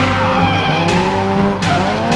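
A car engine revving hard, its pitch climbing twice, with tyres squealing as the car drifts, mixed with background music.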